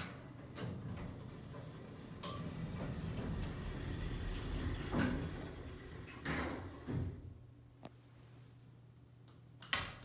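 A metal toggle switch on the elevator car's control panel clicks sharply at the start and again near the end: the fan switch being flicked, with no fan starting up because the fan is dead or disconnected. In between, the vintage hydraulic elevator's car door slides closed with a rumble, ending in a bump about seven seconds in, after which a low steady hum remains.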